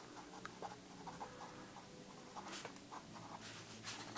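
Faint scratching of a Sharpie felt-tip pen writing on paper: small ticks of the tip with a few short, slightly louder strokes past the middle.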